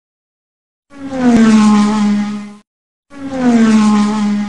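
Racing-car sound effect played twice: each time a loud engine tone with a whoosh that dips in pitch and then holds steady, lasting under two seconds, with a short gap between the two.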